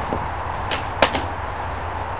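A few light, sharp knocks of steel splitting wedges and a hammer being handled against a split yew log, the sharpest about a second in.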